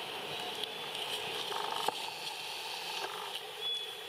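Outdoor forest ambience: a steady high hiss with scattered light clicks and rustles, a short rattle about halfway through, and a brief thin high chirp near the end.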